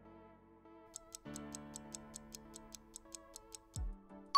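Quiz countdown-timer sound: quiet background music with fast clock-like ticking that starts about a second in, then a short low falling whoosh just before the end.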